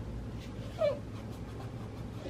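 A single brief whine, falling slightly in pitch, about a second in, over a low steady hum.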